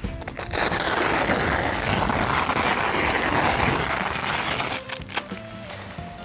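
Hook-and-loop (Velcro) strip being ripped apart as a canopy side wall is pulled off the canopy top: a continuous harsh tearing noise lasting about four seconds, then a few light clicks and fabric handling.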